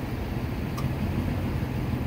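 Steady low engine hum of idling emergency vehicles, with a faint tick a little under a second in.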